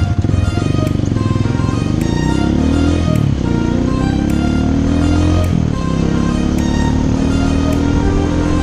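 Honda XLR200's single-cylinder engine pulling away and accelerating. Its pitch rises, then drops twice at gear changes, about three and six seconds in, under background music with a steady beat.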